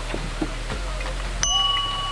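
A small metal wall bell struck once by a pull on its clapper cord, about a second and a half in, ringing on with a few clear, bright tones.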